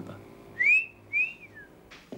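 A man whistles two notes in the classic wolf-whistle shape. The first note glides up, and the second rises briefly and then falls away.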